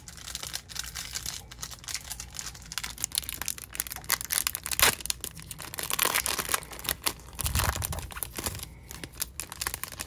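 Foil wrapper of a Topps baseball card pack being torn open and peeled back by hand: a dense, uneven run of crinkles and rips.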